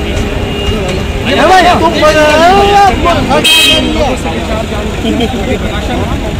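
People talking over a steady low traffic rumble, with one short, high vehicle-horn toot about three and a half seconds in.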